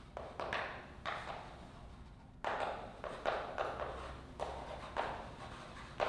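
Chalk writing on a blackboard: a series of short, scratchy strokes and taps, with a brief pause a little after two seconds in.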